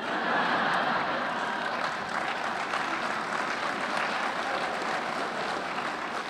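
Audience applause that breaks out all at once and tapers off slowly.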